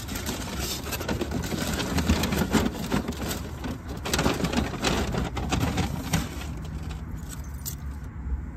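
Rustling, clicking and scraping of things being handled and moved about as someone rummages inside a car, with a steady low rumble underneath.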